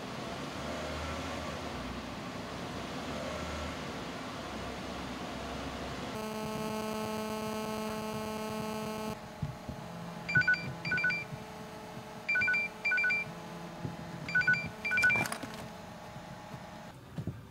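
Steady car cabin road noise, then a steady buzzing tone for about three seconds, then a mobile phone's short two-pitch electronic beeps in three pairs, about two seconds apart, with a click near the end.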